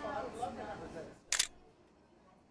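Background café voices, then a single loud camera shutter click a little past halfway, after which it goes quiet.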